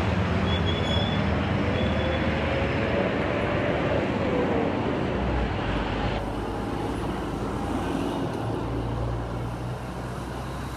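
Street traffic: minibus and motorcycle engines running and passing, over a steady wash of road noise. One engine note rises over the first few seconds and drops away about four seconds in. The sound changes abruptly about six seconds in.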